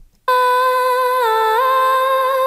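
Solo female lead vocal track played back from the mix, cutting in suddenly a moment in with one long held sung note that dips briefly in pitch and steps back up about a second and a half in.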